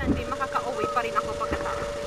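Voices talking over a steady hum, with a few light knocks.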